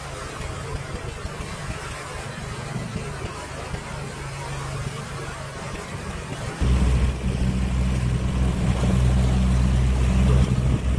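A boat engine running steadily at low revs, with a low, even hum that suddenly grows louder about two-thirds of the way through.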